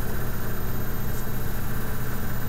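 Steady low hum with a hiss over it: constant background noise, with no change in level.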